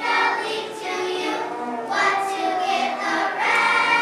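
Children's choir singing together, held sung notes changing pitch every half second or so.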